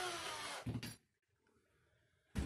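A man's voice trailing off on a drawn-out word, then a short "all", then near silence: room tone.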